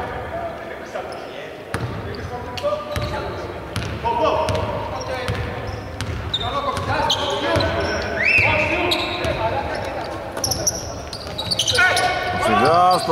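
A basketball being dribbled on a hardwood court, bouncing repeatedly in a large, empty indoor arena.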